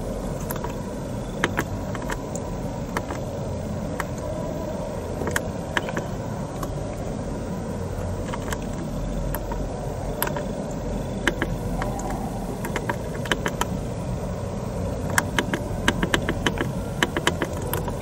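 Steering-wheel control buttons clicking as they are pressed to scroll the dashboard display menus: single clicks every second or so at first, then a quick run of clicks near the end, over a steady low background noise.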